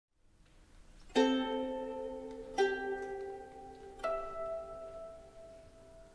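Music: three slow plucked-string notes about a second and a half apart, each struck sharply and left to ring and fade, the last one pitched higher.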